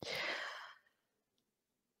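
A woman's short audible breath, like a sigh, lasting under a second and fading out.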